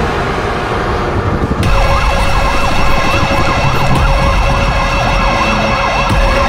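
A low rumbling drone, then from about two seconds in a siren wailing rapidly up and down, about three sweeps a second, over steady sustained tones.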